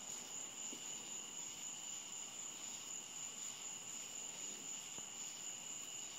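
Water at a rolling boil in a small pan over a side-burner rivet alcohol stove, making a steady bubbling hiss. Crickets trill steadily in the background.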